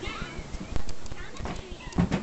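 Light knocks and bumps from a baby clambering over the rim of a plastic toy box full of toys, about three of them over two seconds.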